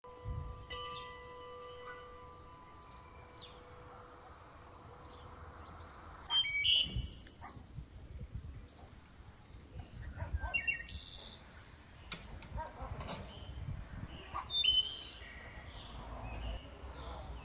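Small birds chirping and calling repeatedly in open countryside, many short high calls scattered through, under a low rumble of wind on the microphone. A faint steady hum sounds in the first few seconds, then fades.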